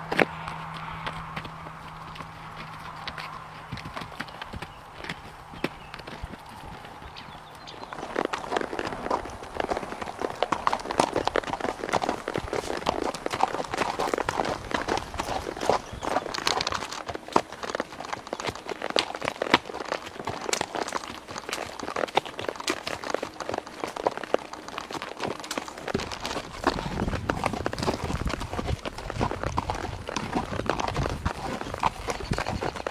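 Horse hooves walking on dirt and rock in irregular footfalls, sparse at first, then louder and busier from about eight seconds in. A low rumble joins near the end.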